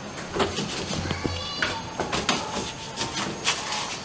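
Scattered knocks, taps and shuffles of a person clambering on hands and knees across the bare metal floor of a stripped car interior, brushing against the roll cage.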